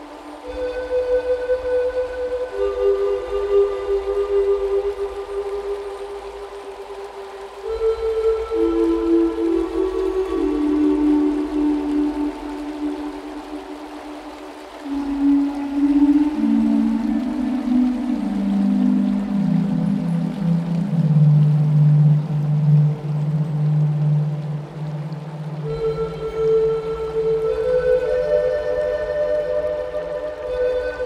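Slow, relaxing instrumental music led by a Native American flute: long held notes that step downward in pitch through most of the passage and jump back up near the end.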